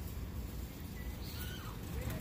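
Steady low outdoor background rumble, with a few faint short high chirps about a second in.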